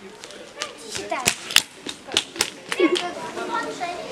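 A quick, irregular run of about eight sharp slaps in under two seconds, mixed with brief children's voices.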